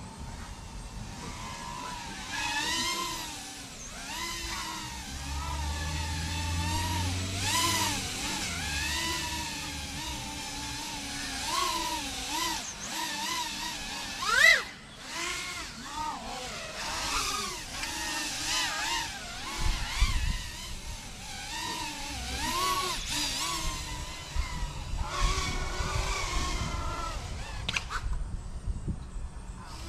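A 3-inch FPV racing quadcopter's motors and propellers whining, the pitch rising and falling constantly with the throttle as it flies the course. About halfway through comes a sharp rising burst of throttle, the loudest moment.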